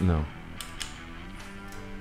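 Electric guitar note ringing faintly and steadily, with a couple of light clicks, while the engaged tuner pedal cuts the guitar's output.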